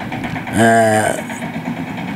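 A man's voice holds one long, level syllable of speech about half a second in, over a low steady background noise.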